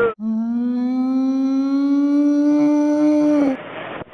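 A single sustained hum-like tone with many overtones, rising slightly in pitch over about three seconds and then stopping abruptly.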